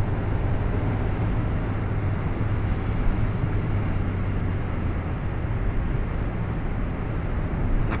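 Steady road noise of a car driving at speed, heard from inside the cabin: a continuous low rumble with tyre and wind hiss over it.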